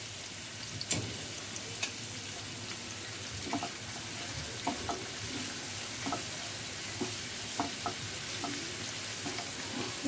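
Chopped onion sizzling in hot oil in a nonstick frying pan, a steady frying hiss. The silicone spatula stirring it makes a few light clicks against the pan in the first two seconds.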